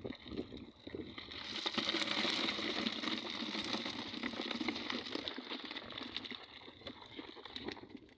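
A netful of small fish, mostly rabbitfish (danggit), tipped from a fish-trap net into a plastic crate: a dense wet pattering and slapping of fish landing on one another, loudest through the middle few seconds.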